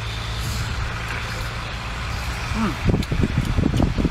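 A steady low engine rumble runs nearby. From about three seconds in, a quick run of close-up clicking, smacking eating noises starts.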